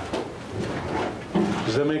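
Speech: voices talking in a small room, with the lecturer beginning a question near the end.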